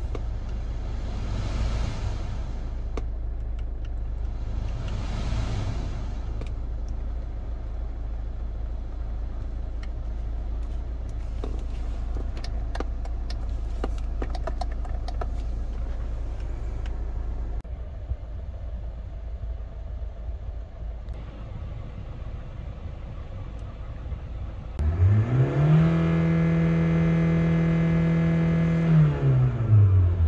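2010 Hyundai Tucson engine heard from inside the cabin. It idles with a steady low hum, two brief rushes of air and a few small clicks. About 25 seconds in, it is revved up to about 3,000 rpm, held steady for about four seconds, and let fall back.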